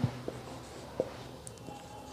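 Whiteboard marker writing numbers on a whiteboard: faint scratchy strokes, with one short click of the tip about a second in.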